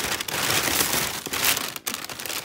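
Thin plastic shopping bag crinkling continuously as hands rummage through it.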